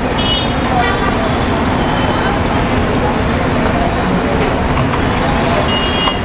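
Steady traffic noise from motorbikes, scooters and cars around a busy roadside petrol pump, with background voices and brief high horn toots near the start and near the end.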